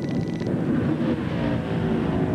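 NASCAR Cup stock car's V8 engine running at speed on a qualifying lap, its pitch climbing slightly in the second half.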